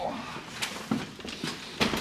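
A few short clicks and knocks with some shuffling in a small room, the handling noise of stepping into a hotel room through its door.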